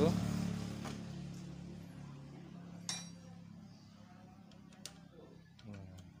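Small metallic clicks from a Honda Beat scooter's rear brake lever and cable end as the cable fitting is seated back in the lever mount, with one sharper click about three seconds in. A background engine hum fades away over the first couple of seconds.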